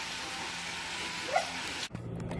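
A steady, even hiss, with a brief rising squeak about one and a half seconds in; the hiss cuts off abruptly just before the end.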